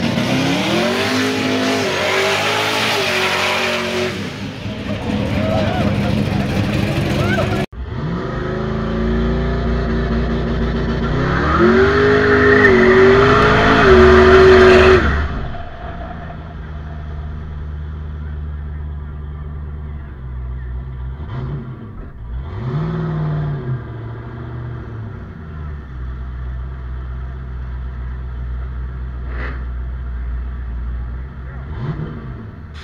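Donk drag cars' V8 engines revving hard, the pitch climbing in two long pulls, the second one the loudest. After that, an engine rumbles low at idle with a couple of short throttle blips.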